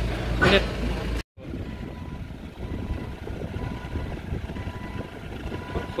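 Forklift engine idling close by under a man's voice, broken off abruptly at an edit about a second in. After that, a quieter, steady engine-like noise with a faint high tone.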